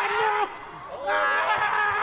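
Raised voices from the commentary and the crowd, with a short lull about half a second in.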